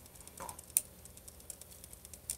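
Faint, scattered small clicks, with one sharper click about three-quarters of a second in, from a small object being handled in the fingers.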